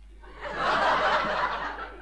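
Studio audience laughing at a punchline: a burst of many people's laughter that swells about half a second in and dies away near the end.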